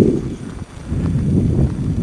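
Footsteps on a dirt and gravel trail, an uneven low rumble of steps with a short lull about half a second in.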